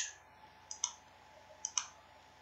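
Computer mouse button clicks: two pairs of short sharp clicks about a second apart, with a quiet room in between.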